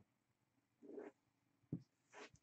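Near silence: room tone, with one faint, brief soft sound about a second in and a light tap near the end.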